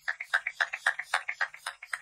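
Pump-action setting spray bottle (Colourpop Pretty Fresh) spritzed onto the face over and over in quick succession, a rapid even run of short hissing spritzes, about six a second.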